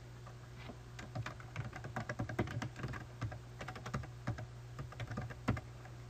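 Typing on a computer keyboard: a run of quick, irregular key clicks starting about a second in and stopping shortly before the end, over a steady low hum.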